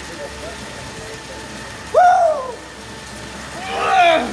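A man whooping "woo!", one loud rising-then-falling call about halfway through and another starting near the end, over a steady background hiss.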